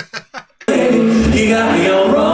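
A man laughing in short bursts, then a live a cappella group's close-harmony singing cuts in abruptly, loud and continuous, with a very low bass voice holding beneath the harmonies.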